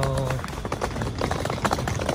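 Wheeled suitcase rolling over paving tiles, its wheels clattering in rapid, irregular clicks, with footsteps, from about half a second in.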